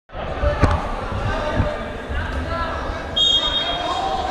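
Wrestling referee's whistle blown once near the end, a short, steady, shrill blast, over voices in a large gym; a single thump comes about half a second in.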